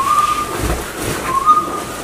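Two short high whistles about a second and a half apart, each gliding slightly upward, with a brief low rumble between them.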